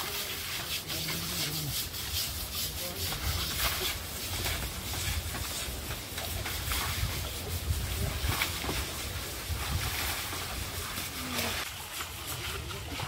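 Water splashing and repeated scrubbing strokes as an Asian elephant is bathed in a shallow stream, water poured over it from a bucket and its hide rubbed down.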